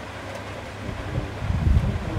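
Wind rumbling on a clip-on microphone, growing stronger about halfway through.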